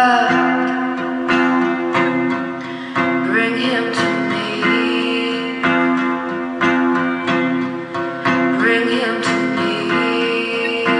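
A song on guitar: notes picked in a steady pattern over sustained low tones, with a few notes that slide upward.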